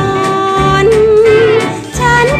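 Thai song: a female singer holds one long note with a wavering vibrato over instrumental accompaniment. The note steps up in pitch about halfway and falls away near the end.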